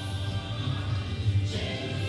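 A worship song: a choir singing to music, sustained and steady.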